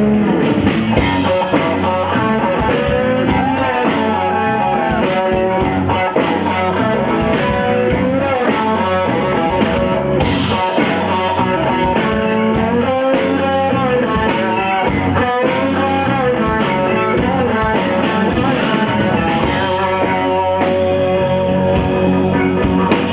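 A live rock band plays loudly: electric guitars over bass and drums, with a melody line that slides up and down in pitch.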